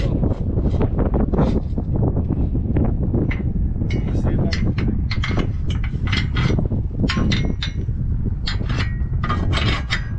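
Metal clinking and knocking, many short irregular strikes, as a steel pin and bracket are worked on a John Deere planter's adjustment, over a steady low rumble.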